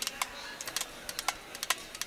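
A scattering of sharp, irregular clicks, about a dozen in two seconds.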